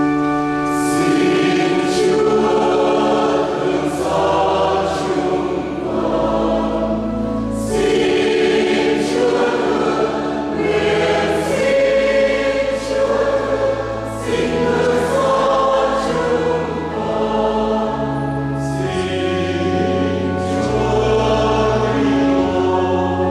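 Church choir of women and men singing a hymn in harmony, over sustained organ chords.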